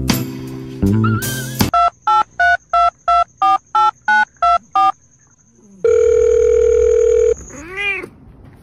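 Ten short telephone keypad beeps (DTMF tones) at about three a second, then a steady phone tone lasting about a second and a half, followed near the end by a short rising-and-falling cat meow.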